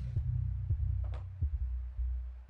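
Electric drill running with a steady low hum while a 2 mm bit drills a small diecast metal part, with a few light knocks and a brief higher rasp about a second in as the bit bites.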